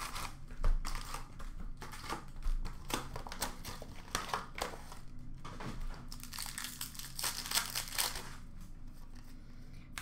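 Wrappers of 2019-20 Upper Deck SP Authentic hockey card packs crinkling and tearing as the packs are handled and ripped open, a run of short crackles.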